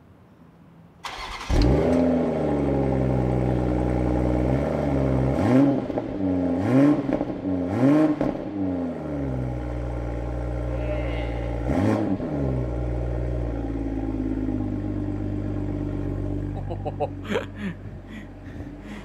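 Toyota GR Supra engine started close to its exhaust tailpipes: it catches with a flare about a second in, is blipped four times in quick succession and once more a few seconds later, each rev rising and falling, then settles to a steady idle. A very fierce exhaust note.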